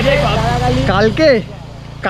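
A man's voice speaking briefly over a low steady rumble that fades about one and a half seconds in.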